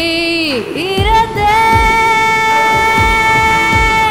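Kannada film song: a female singer holds a long note that falls away about half a second in, then slides up into a new high note and sustains it, over a steady low drum beat.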